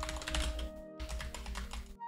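Computer keyboard being typed on in quick runs of clicks, over quiet background music.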